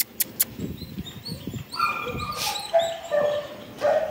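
A dog whining: a high, thin whine that starts about two seconds in and holds, shifting pitch in steps, for about two seconds. A few sharp clicks come right at the start.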